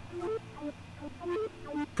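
Korg minilogue synthesizer lead, a bouncy part, playing a run of short staccato notes dry, with its effects switched off.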